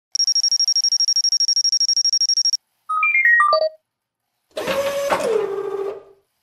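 Electronic telephone ringtone: a high, rapidly pulsing trill for about two and a half seconds, then a quick run of beeps stepping down in pitch. Near the end comes a hissy sound whose tone drops in pitch about a second before it stops.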